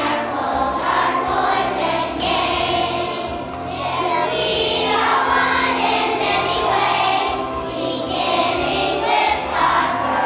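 Children's choir singing together, holding sustained sung notes.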